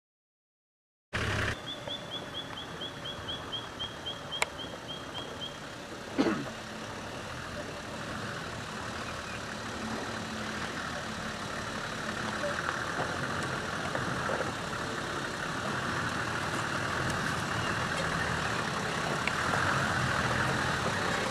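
Toyota Troopcarrier's engine working as the 4WD crawls over rock, growing louder as it comes closer. A bird chirps rapidly a dozen times in the first few seconds, and a single sharp sound with a falling sweep stands out about six seconds in.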